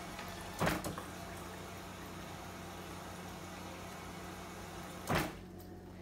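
Refrigerator door water dispenser filling a cup: a click as it starts, a steady stream of water for about four seconds, then another click as it stops.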